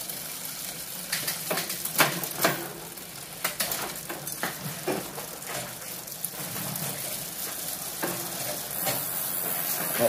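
Rear wheel and Shimano drivetrain of a Specialized Rockhopper mountain bike spinning freely on a work stand: a fast, continuous ticking and whir, with scattered sharper clicks.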